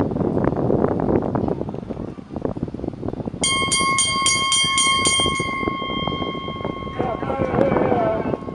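Spectators chattering at a racetrack rail. About three and a half seconds in, a bell rings rapidly, about four strokes a second for some two seconds, and its tone then hangs on and fades over the next few seconds.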